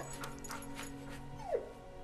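A dog gives one short whine that falls in pitch, about a second and a half in, over faint steady background music.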